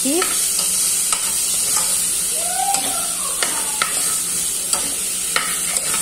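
Chopped calabresa sausage frying in a metal pot with a steady sizzle, stirred with a spoon that clicks against the pot several times.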